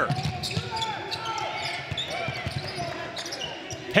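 Basketball being dribbled on a hardwood court: a few scattered bounces over the murmur of crowd voices in a large gym.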